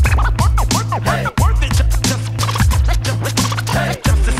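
DJ turntable scratching over a hip-hop beat: quick rising and falling pitch sweeps as the record is pushed back and forth, over steady bass and drums.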